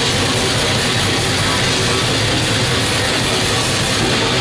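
Live heavy metal band playing at full volume: distorted guitar and drums merge into a dense, unbroken wall of sound.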